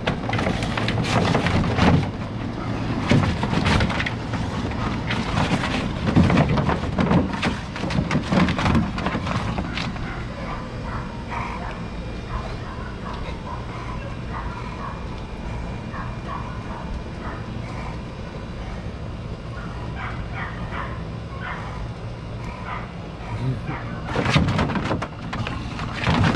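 An American bulldog playing rough with rubber balls in a plastic kiddie pool: repeated knocks and bumps, thickest in the first ten seconds and again near the end, with the dog vocalizing in between, over a steady low hum.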